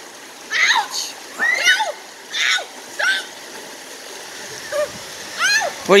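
Shallow, rocky river rapids running with a steady rush of water. Several short, high shouts or squeals of voices ring out over it during the first half and again near the end.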